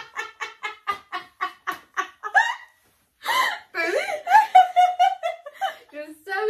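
Two women laughing hard together: quick, rhythmic bursts of laughter, about four a second, that fade off, then after a short pause a louder, higher laugh with one long held note.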